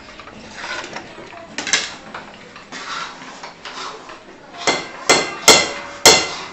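A steel ladle scraping thick puran (cooked chana dal and sugar paste), then knocking against the rim of a steel tin. There are softer scrapes at first, then three sharp ringing metal clanks close together near the end.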